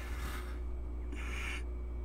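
A man's quiet breathy laugh: two short, soft exhales about half a second apart, over a low steady hum.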